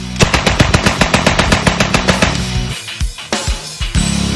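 M3 "Grease Gun" .45 submachine gun firing one full-auto burst of about sixteen shots at a slow, even rate of roughly eight a second, lasting about two seconds. Rock music plays underneath.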